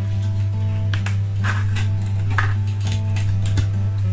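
Background music with sustained notes and a few soft, separate note attacks.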